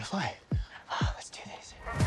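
Movie trailer soundtrack: hushed, whispered speech over a quiet music bed, with two deep booming hits that fall in pitch, about half a second and a second in.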